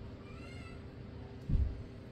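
A faint, short, high call that rises and falls, like a cat's meow, about half a second in. A brief low sound follows about a second later.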